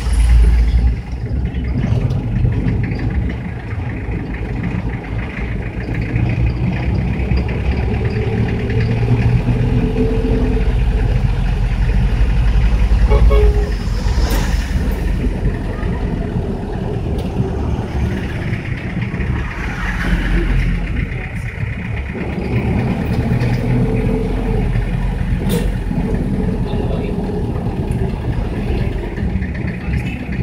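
Engine and road noise of a trotro minibus, heard from inside its cabin while it drives. A steady low drone with no breaks, a little louder about halfway through.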